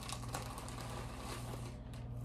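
Soft rustling and light crinkling of handled items with a few small clicks, over a faint steady low hum.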